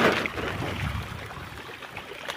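Pangasius catfish splashing and churning the pond surface as they feed in a crowd, with one loud splash right at the start.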